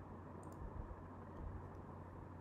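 A few light clicks from computer input while code is being edited: a close pair about half a second in and fainter single clicks later, over a low steady hum.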